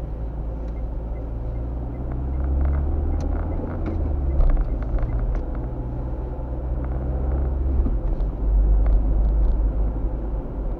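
Car engine and road noise heard from inside the cabin while driving, a low steady hum whose engine note shifts up and down a few times. Scattered small clicks and knocks come in the middle seconds.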